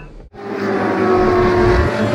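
A vehicle engine sound effect, steady and slowly swelling, coming in after a brief drop-out about a third of a second in.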